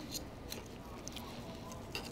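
Knife and fork cutting through a steak on a plate: faint scraping with a few small clicks.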